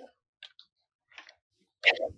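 A few faint, sparse clicks, then a short, louder snatch of a voice near the end.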